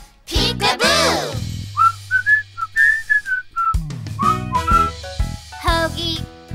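Children's song instrumental break: a quick swooping sound effect about a second in, then a short whistled tune of single notes over a held bass note, before the fuller backing music comes back in.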